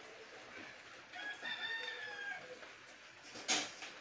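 A rooster crowing once, faintly, about a second in, one drawn-out call lasting just over a second. A sharp knock near the end.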